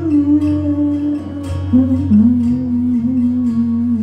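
Live solo performance: strummed acoustic guitar under a man's voice holding long, low wordless notes, the melody stepping down about two seconds in.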